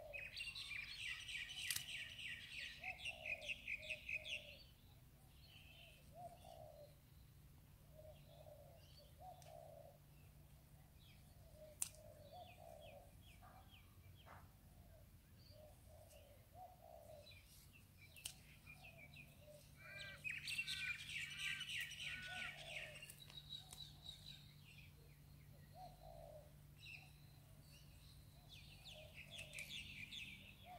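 Faint outdoor birdsong: small birds chirping in bursts of rapid chattering notes, once in the first few seconds and again about twenty seconds in. A lower note repeats about once a second throughout.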